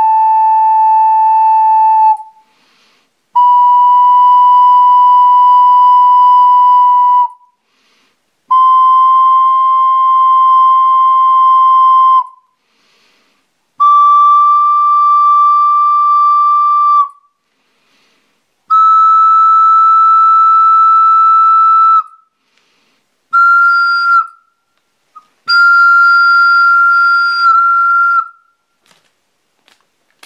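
Hamlett Alto C 12-hole ocarina playing long, steady held notes one at a time with short breaks, climbing a step at a time up the scale; the second-to-last note is short. Each note is held at a set breath pressure for tuning to A = 440 Hz.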